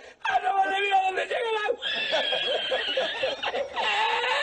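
A man laughing hard in long, high-pitched, drawn-out squeals of laughter, with a short break just after the start and a long held high note from about halfway through.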